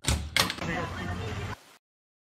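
A door sound effect: a sharp knock as it starts, a second knock a moment later, then about a second of noise that cuts off suddenly.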